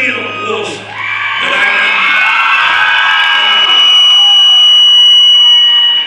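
An audience cheering, yelling and whooping, building up after the first second and loudest near the end, with a steady high whistle-like tone running through the second half. The cheering drops away suddenly at the end.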